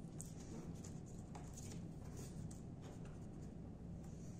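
Faint, scattered scratching and rubbing from hands handling an ultrasonic probe over a steel reference block and the paper it rests on, over a steady low hum.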